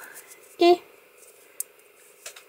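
Faint handling sounds of a 2 mm metal crochet hook working yarn by hand, with one sharp tick about one and a half seconds in.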